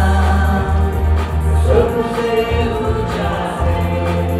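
Several voices singing a worship song together into microphones, over an electronic keyboard accompaniment with a steady low bass.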